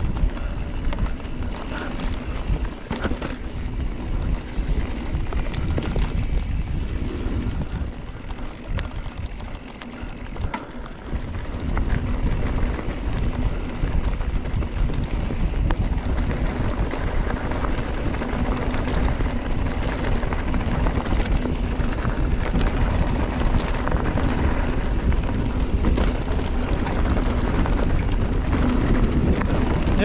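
Giant Trance 3 full-suspension mountain bike ridden fast down a dirt singletrack: wind rushing over the camera microphone, the knobby tyres rumbling over the dirt, and the bike's chain and parts rattling with many short clicks over bumps. The noise eases for a few seconds about nine seconds in, then picks up again.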